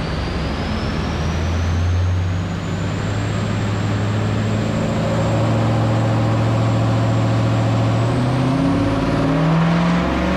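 Holden VE SS ute's L98 V8 running on a roller chassis dyno through race exhaust pipes, with a high whine that climbs in pitch over the first few seconds and then holds steady. Near the end the engine note and the whine rise together as the revs climb in a power run.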